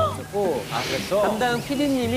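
Speech: Korean talk-show dialogue playing from the video, with a brief hiss about a second in.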